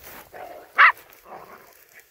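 A dog gives one short, high bark just under a second in while harrying a shot wild boar, with fainter scuffling sounds around it.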